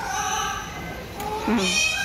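A parrot perched at a microphone calling, amplified through the show's loudspeakers: two calls, the second louder.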